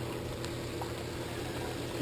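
Reef aquarium sump running: a steady rush and bubbling of water from the overflow drain, with a low, even pump hum underneath.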